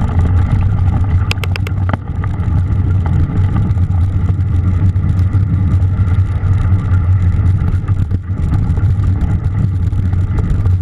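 Mountain bike riding a snowy, muddy trail, heard through an action camera's microphone: a loud, steady low rumble of wind buffeting and tyre noise, with a quick run of four or five clicks about a second and a half in.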